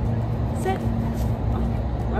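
Steady low outdoor rumble, with one short high chirp less than a second in.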